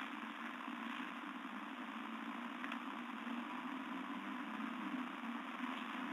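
Steady low hum with an even hiss and no distinct events: the background room noise of the recording.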